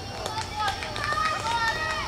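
Several high-pitched voices shouting and calling out, overlapping one another.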